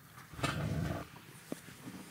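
Soft, low breathy rustle lasting about half a second, then a single faint click: a man breathing out and shifting his arms in his seat during a pause in conversation.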